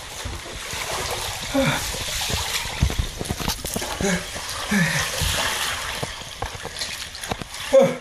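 Ice water sloshing and splashing in a bathtub as a man settles into it, with clicks of ice and water against the tub. Several short breathy sighs and gasps are heard, his breathing caught by the shock of the ice-cold water.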